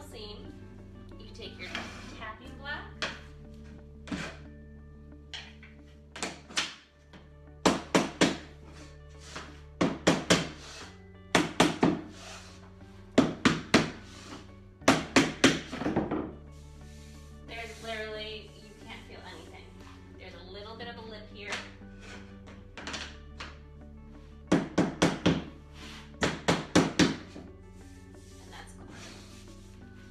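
Soft mallet tapping a luxury vinyl plank to seat its drop-and-lock joint flat on the floor, in quick bursts of three to five strikes, with pauses between bursts.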